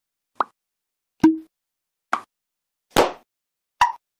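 Five short pop sound effects, a little under a second apart, from an animated subscribe end card. The second and fourth are the loudest, and the second ends in a brief low tone.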